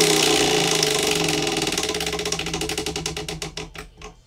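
Large hand-spun prize wheel ticking as its rim pegs click past the pointer: a rapid clatter that slows into separate, spreading clicks as the wheel coasts down, stopping near the end.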